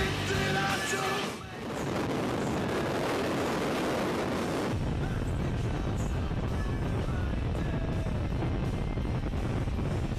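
Rock music ends about a second in. It gives way to a steady rushing of air, which turns into a heavy low rumble of wind buffeting the microphone from about five seconds in, typical of freefall.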